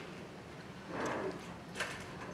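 Faint stage noises in a hall: a soft shuffling rustle about a second in and a short sharp knock near the end.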